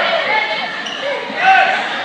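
Gym crowd noise during a volleyball rally: spectators' voices echo in the hall, with two short squeaks, typical of sneakers on the hardwood court, about a third of a second in and again, louder, around one and a half seconds.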